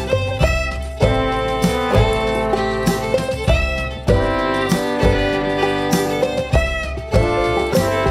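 Instrumental break in a folk song: a fiddle plays the melody over strummed guitar, with a steady beat of about two strokes a second.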